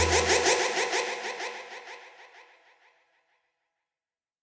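The tail of an electronic dance track: the bass drops out right at the start and a quick repeating synth pattern fades away, dying out completely about two and a half seconds in.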